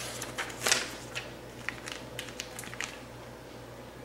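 Plastic-wrapped meat package crinkling and crackling as it is picked up and handled, a scatter of small irregular clicks and rustles that dies away near the end, over a faint steady hum.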